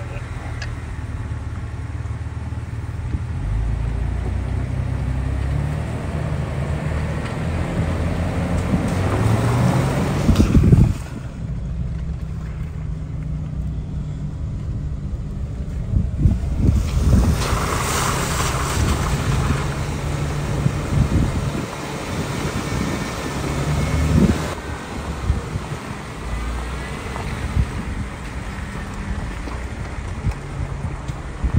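Jeep Wrangler engine running at low speed as it creeps along a muddy, rutted trail, its low note rising and falling with the throttle. There are a few louder thumps along the way.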